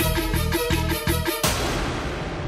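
Dramatic background score: a fast electronic beat of about four pulses a second, ending in a single hit about one and a half seconds in that then fades away.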